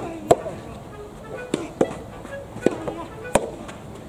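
Soft tennis ball struck by rackets and bouncing on a hard court: a series of sharp pops, about seven over four seconds, the loudest just after the start.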